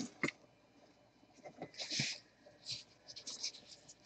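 Faint scratchy rustles and light ticks of trading cards being handled and slid on a mat by gloved hands: a click just after the start, a short rustle about two seconds in, and a few small ticks near the end.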